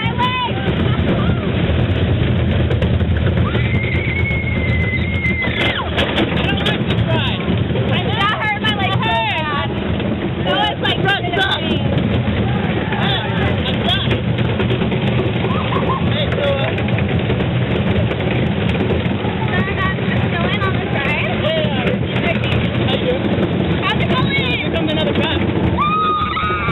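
Colossus wooden roller coaster train rumbling along its track at speed, with riders screaming and yelling in bursts over the running noise, loudest about a second in and again near the end.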